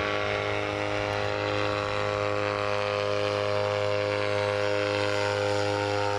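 A paramotor's engine and caged propeller running steadily in flight, a constant droning note.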